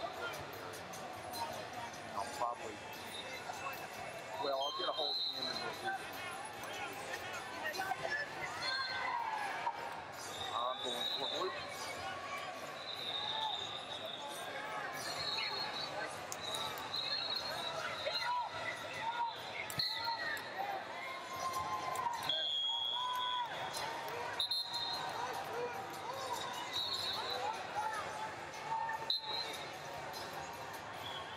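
Busy wrestling-tournament hall ambience: indistinct voices of coaches and spectators, shoes squeaking on the mats, and short high referee whistles from around the arena, sounding every few seconds.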